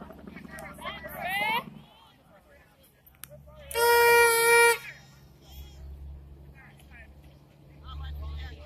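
A vehicle horn sounds once in the middle, a single steady note held for about a second, the loudest sound here. Before it, people shout across the field, and a low steady rumble of distant traffic runs underneath.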